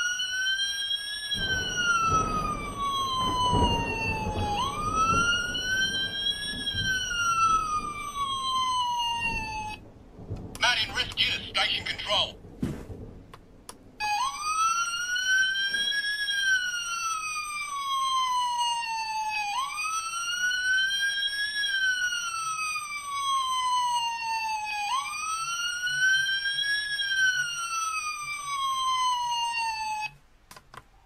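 Electronic wailing siren from a Fireman Sam mountain rescue 4x4 toy, played through its small built-in speaker. Each wail rises over about a second and a half and then falls over about three seconds. A rough rumbling noise runs under the first two wails, and about ten seconds in the siren stops for some four seconds, with a short noisy sound in the gap, before it starts again.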